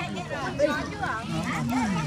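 Quiet talking voices, with no other clear sound standing out.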